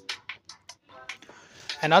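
A pause in a man's talking: about a second and a half of low sound with a few faint short clicks, then his voice starts again near the end.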